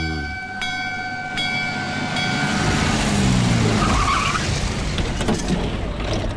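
A temple bell is struck about four times in quick succession, each strike ringing on in clear steady tones. From about halfway through, a vehicle's engine and road noise swell in and then ease off slightly near the end.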